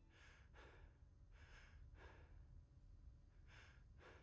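Faint breathy exhalations from a person: two quick puffs at the start, two more about a second and a half in, and one near the end.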